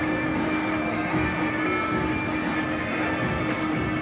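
Buffalo Ascension video slot machine playing its free-games bonus music and reel-spin sounds, a steady electronic tune with held tones.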